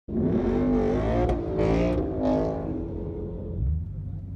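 V8 car engine being revved at the start line, in three short blips that rise and fall in pitch, then dropping back to a lower steady run near the end.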